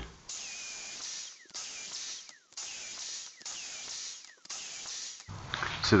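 Festool track saw making repeated stopped cuts against a guide-rail end stop. It is heard as about five separate bursts of hiss, each roughly a second long with a faint falling whine, each one ending abruptly.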